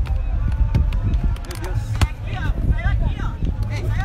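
Footballers' shouts carrying across an open pitch, short and indistinct, over a steady low rumble of wind on the microphone. A single sharp knock sounds about two seconds in.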